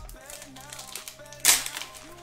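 Sports trading cards being flicked through by hand, with small clicks and slides of card stock, and a sharp crackle of plastic wrapping about one and a half seconds in. Faint background music plays underneath.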